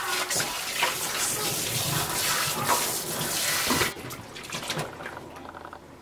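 Kitchen tap water running onto the nonstick bowl of a Tefal ActiFry as it is rinsed in a stainless-steel sink. The water cuts off about four seconds in, leaving fainter handling and dripping sounds.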